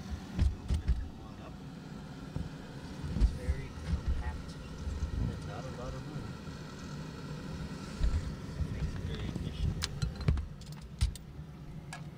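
Handheld camera microphone bumping and rubbing against soft cargo bags and clothing as it is squeezed through a packed space-station module: irregular low thumps and rustling over a steady hum, with a few sharp clicks near the end.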